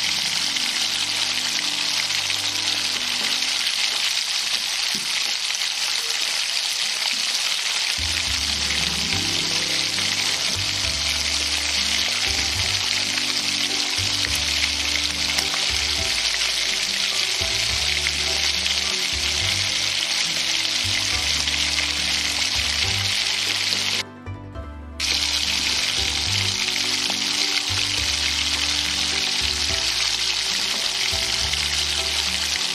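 Aloo tikki (potato patties) frying in a pan of hot oil, a steady sizzle, with background music. The sound briefly drops out for about a second near the three-quarter mark.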